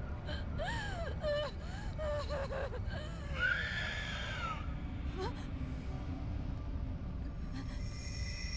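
A young boy crying: short sobbing gasps and whimpers, then one longer drawn-out cry that rises and falls, over a steady low rumble. Held music tones come in near the end.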